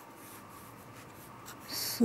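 A pen scratching on paper as a digit is written by hand, with one louder, hissy stroke near the end.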